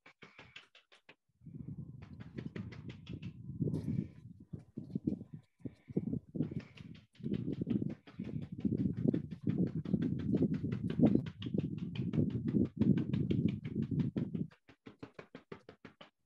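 A dry bristle brush tapped repeatedly against a stretched canvas, dabbing white paint on to lay a fog layer: a steady run of soft knocks, about four or five a second, with short breaks.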